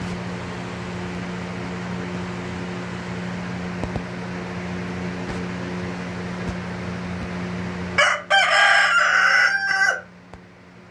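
Rooster crowing loudly near the end, one crow lasting about two seconds with a short first note, then a longer held call. Before it, a steady low hum.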